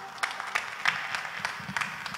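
Sparse audience applause: a handful of people clapping unevenly at the end of a song, with single claps standing out.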